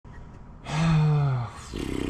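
A man's long drawn-out groan, starting under a second in and sagging slightly in pitch as it fades, followed by a short breathy exhale.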